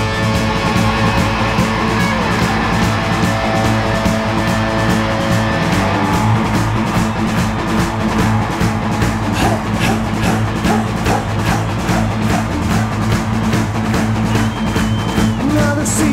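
Hard rock band playing an instrumental passage live: distorted electric guitar over bass and a steady, even drum beat.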